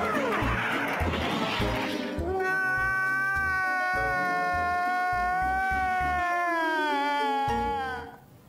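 A man's long, high wailing cry, held for about five seconds and sliding down in pitch near the end, over music with a steady beat. It is preceded in the first two seconds by a loud rush of noise over the same beat.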